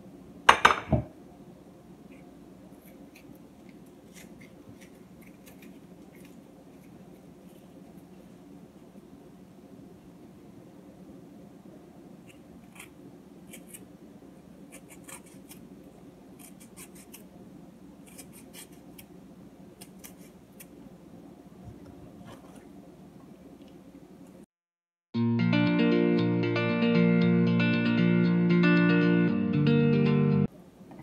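A sharp clatter in the first second, then faint steady room hum with scattered light clicks and taps as cut vegetables are laid into a glass dish. About 25 seconds in the sound cuts out and loud background music begins.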